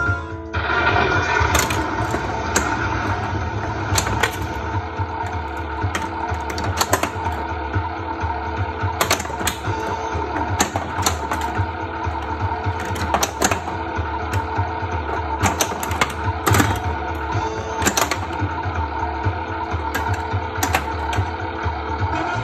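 Bally Who Dunnit pinball machine in play: its game music runs steadily from the cabinet speakers. Irregular sharp clacks, roughly one or two a second, come from the flippers, solenoids and the ball striking the playfield.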